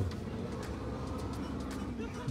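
Kia Grand Carnival's power sliding door running open under its electric motor, a steady mechanical hum with a faint whine.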